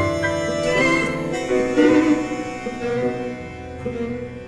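Tango orchestra of piano, two violins, viola, two bandoneons and double bass playing a milonga live, with sustained bandoneon and string notes over the piano and bass.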